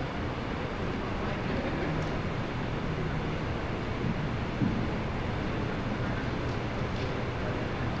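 Steady low hum and hiss of room noise in a lecture hall, with a small knock about halfway through.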